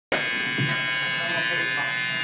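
Steady electric buzz from live guitar amplifiers on stage, unchanging in level, with faint voices underneath.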